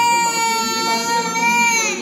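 A toddler crying in one long, steady wail that drops in pitch near the end.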